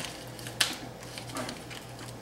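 Scissors snipping the plastic wrapper of a pork roast: one sharp snip about half a second in and a fainter one later, over a steady low hum.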